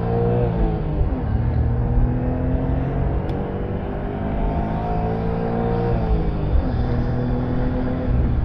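Suzuki Cappuccino's 657cc three-cylinder engine pulling at full throttle, its note climbing through the revs. There are two quick drops in pitch, one just at the start and one about six seconds in, as it changes up a gear, with wind noise from the open-topped cabin.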